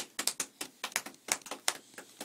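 A small child clapping hands: a quick, uneven run of claps, about six a second.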